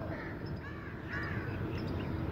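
A few faint bird calls, short arched notes repeated about three times, over steady low background noise.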